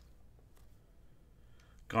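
Baseball cards being flipped through by hand, faint: a sharp click of card stock at the start, then a few soft ticks and slides. A man's voice begins calling names near the end.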